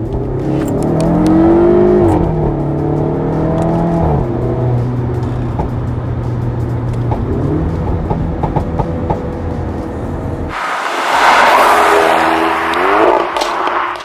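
Alfa Romeo Giulietta Veloce S's 1750 TBi turbocharged four-cylinder engine accelerating, heard from inside the cabin. Its pitch climbs and drops back at upshifts, holds steady for a few seconds, then climbs again. About ten seconds in a loud rushing noise joins it as it pulls once more, and it stops suddenly near the end.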